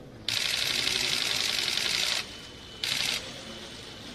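Photographers' camera shutters firing in rapid bursts: one burst of about two seconds starting just after the beginning, then a short half-second burst near the end.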